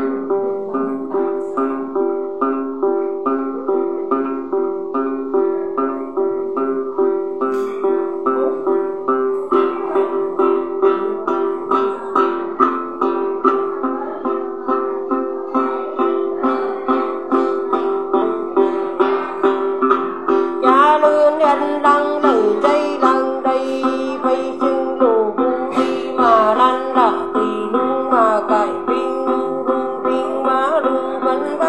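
Đàn tính, the Tày long-necked lute with a gourd body, plucked in a quick steady rhythm over a ringing low drone. About two-thirds of the way through, a woman's voice comes in singing with a wavering, ornamented line over the lute.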